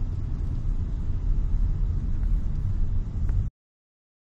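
Car engine and road noise heard from inside the moving car's cabin, a steady low rumble that cuts off suddenly about three and a half seconds in.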